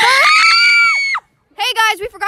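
A high-pitched voice rising into a held scream that falls away and cuts off about a second in; after a brief silence, high-pitched talking starts again.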